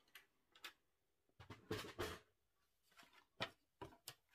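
Folded cardstock panels handled and set down on a hard tabletop: a few soft rustles and taps, the loudest cluster about halfway through and two more near the end.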